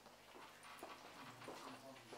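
Faint footsteps and shuffling in a quiet room, with a soft murmured voice.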